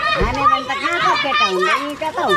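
Children shouting and calling out as they play, several high voices overlapping, with a brief low thud just after the start.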